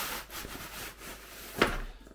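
Cardboard box rustling and scraping as a hessian-wrapped package slides out of it, then a single thud about one and a half seconds in as the package drops onto a wooden table.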